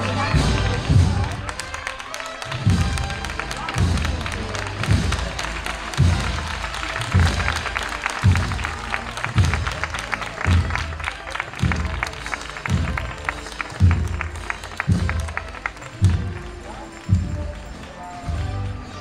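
A processional marching band's drums beat a slow, steady cadence: a deep bass drum stroke about once a second, with a snare drum rattling through the middle stretch.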